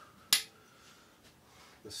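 A single sharp metallic click about a third of a second in, from the stainless steel kettle being handled as the pouring into the AeroPress ends, then faint room tone.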